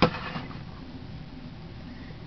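A single sharp knock at the very start, then steady quiet room noise.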